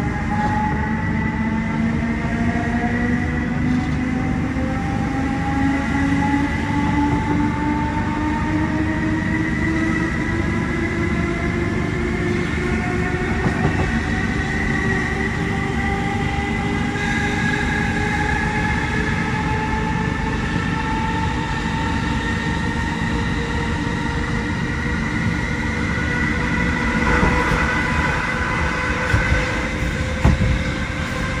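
Interior of a Class 317 electric multiple unit on the move: the traction motor whine climbs steadily in pitch as the train gathers speed, over the constant rumble of wheels on rail. A few louder knocks come near the end.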